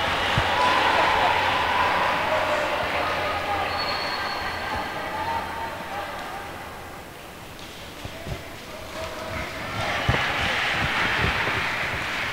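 Large sports hall ambience with a steady murmur of background voices. In the last few seconds a few sharp taps come through: badminton rackets striking the shuttlecock and footfalls on the court during a rally.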